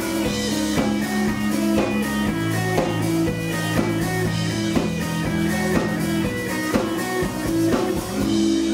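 Live rock band playing an instrumental passage with no vocals: electric bass and electric guitar over a drum kit keeping a steady beat.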